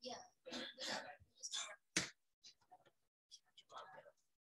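Faint, indistinct whispered speech in short broken bursts, with one sharp click about halfway through that is the loudest sound.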